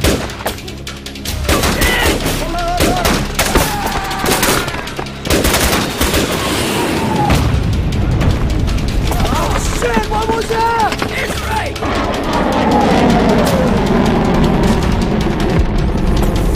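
Film battle sound effects: dense gunfire with rapid machine-gun bursts for the first several seconds, then a heavy, sustained explosion rumble from about seven seconds in, with a music score underneath.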